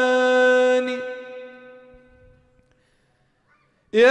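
A man's unaccompanied solo voice singing an Arabic nasheed, holding one long steady note that fades away about two seconds in.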